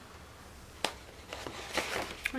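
Pages of a colouring book being turned by hand: one sharp paper snap a little under a second in, then lighter rustles of paper.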